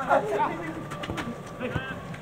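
Footballers calling out to each other on a training pitch, short shouts that rise and fall in pitch, with a few sharp thuds of a football being kicked.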